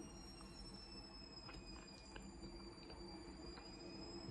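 Near silence: faint room tone with a thin steady high-pitched whine and a few faint soft clicks from eating.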